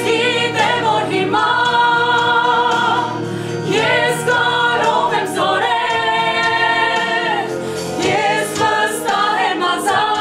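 A group of women singing together, with long held notes and vibrato.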